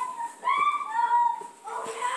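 A drawn-out high-pitched whining cry that wavers slightly in pitch and breaks off about one and a half seconds in.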